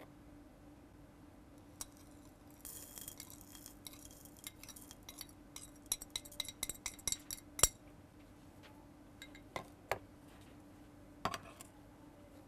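A metal spoon scraping soil across a glass petri dish, then a quick run of light clinks of spoon on glass, the loudest about seven and a half seconds in. A few single taps of glassware follow near the end.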